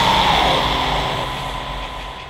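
Black metal music fading out: a dense, sustained wash of distorted sound with a few held tones, steadily dying down in level.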